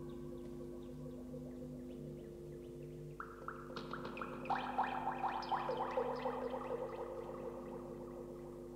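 Electronic music played live on synthesizers: steady low drones are held under it. About three seconds in, a run of rapid repeated short notes enters, growing denser and louder through the middle of the passage.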